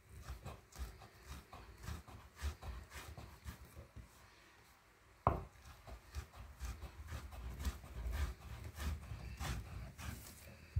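Wooden rolling pin rolled and pressed back and forth over a wooden board, crushing boiled dhal into a fine meal: an irregular run of soft knocks and scraping, with one louder knock about five seconds in.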